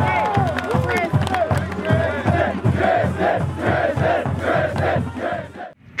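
A group of football players yelling and cheering, the first shouts rising and falling in pitch, then turning into a rhythmic chant of repeated calls over a steady low beat that stops abruptly near the end.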